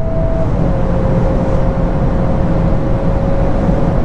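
VW Golf R Mk8's 2.0-litre turbocharged four-cylinder pulling hard at around 230–240 km/h, heard inside the cabin as a dense, even road and wind rumble. Over it runs a steady engine note, a bit artificial, that steps down slightly about half a second in and then holds.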